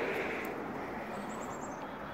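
Steady outdoor background noise, with a quick run of faint, high chirps a little past the middle.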